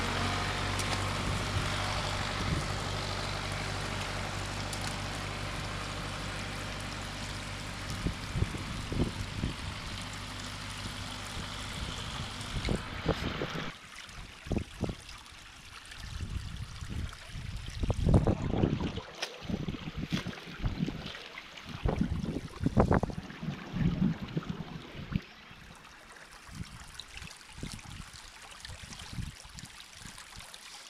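Muddy floodwater flowing fast through a drainage ditch, with an engine idling steadily underneath. About fourteen seconds in, the engine sound stops abruptly, leaving the running water and irregular gusts of wind buffeting the microphone.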